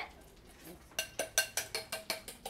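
Eggs being beaten by hand in a bowl: a utensil clinks against the bowl in a fast, even rhythm of about six strokes a second, starting about a second in.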